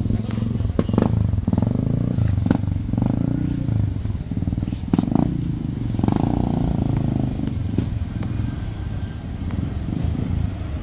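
Motorcycle engine running close by in a parking lot, a steady low engine note, with a few sharp clicks and people's voices in the background.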